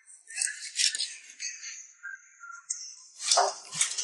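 Kitchen cleaver cutting crosswise through a large whole scaled fish on a wooden chopping board: a series of short, irregular cuts through scales and flesh, the loudest about three seconds in.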